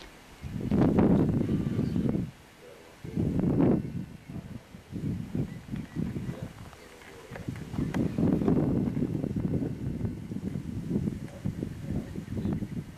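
Wind gusting over the camcorder microphone in irregular rumbling bursts. The strongest bursts come about a second in and near four seconds, and a long rough stretch runs through the second half.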